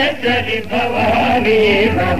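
A voice singing long, wavering notes of a Telugu stage-drama padyam (verse song), with a steady low drone beneath.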